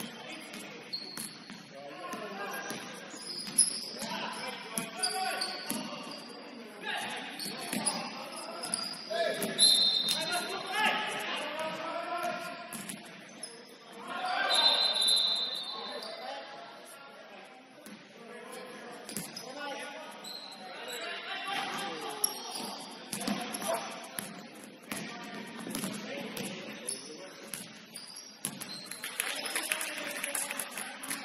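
Basketball bouncing on a wooden gym floor during a game, echoing in a large hall, with players' voices calling out. Short high-pitched sneaker squeaks come twice around the middle.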